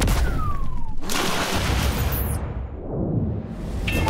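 Whoosh transition sound effect over a low rumble: a short falling tone in the first second, then a dense rushing sweep that dulls about two and a half seconds in and brightens again near the end.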